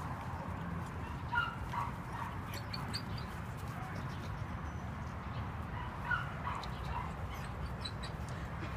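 A dog giving short barks or yips, a pair about a second and a half in and another pair about six seconds in, over a steady low rumble.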